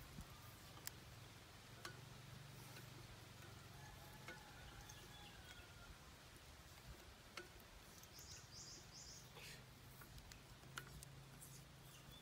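Near silence: faint outdoor ambience with a low steady hum, scattered small clicks and a few faint high bird chirps, three short ones about eight seconds in.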